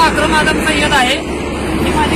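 People talking over a steady low rumble of road traffic and engines.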